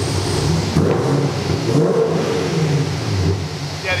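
Sixth-generation Chevrolet Camaro's cammed V8 idling, then revved once: the pitch rises about a second and a half in and settles back to idle about a second later.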